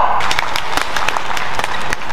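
Spectators clapping in irregular applause after a point is won in a badminton match.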